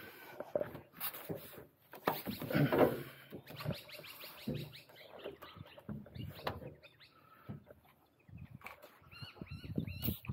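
Scattered knocks, scuffs and clicks of boots and gloved hands on the steel ladder and hopper edge of a garbage truck as someone climbs up, with bird calls among them.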